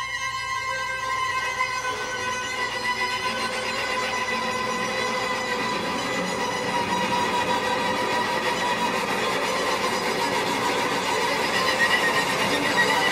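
Electric string quartet playing sustained, held notes in a dense contemporary texture. The sound thickens and slowly grows louder.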